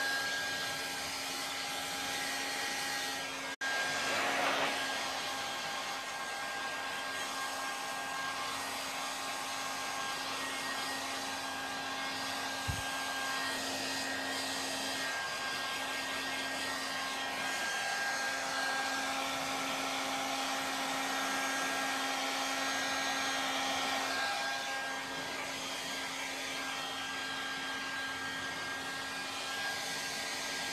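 Handheld hair dryer blowing steadily, a continuous whooshing airflow with a steady motor hum. The sound drops out for an instant about three and a half seconds in.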